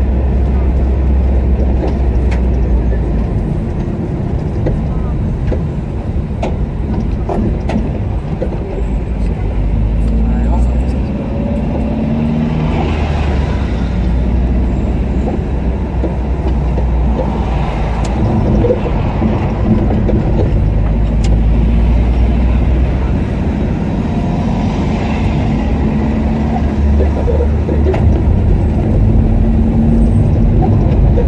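A car driving slowly in city traffic: a steady low engine and road rumble, with voices faintly heard at times.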